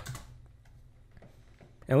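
A few faint, scattered computer keyboard clicks.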